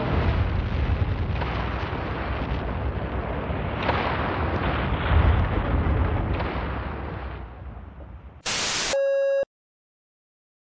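A long, loud rumble of a skyscraper collapsing, dying away over the last seconds. It is followed by a half-second burst of static and a short electronic beep, then the sound cuts off.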